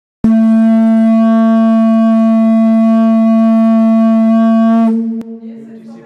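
Conch shell horn blown in one long, steady note that starts abruptly and stops just under five seconds in, with a slight drop in pitch as it ends.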